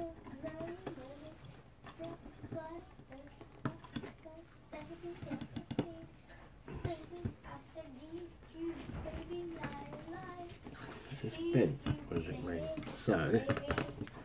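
Small plastic and metal clicks and taps as a bracket is fitted by hand onto a water cooler's pump block. A faint, wavering, voice-like sound runs in the background, and a louder voice comes in near the end.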